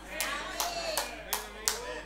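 About five sharp hand claps, a little under three a second, with faint voices underneath.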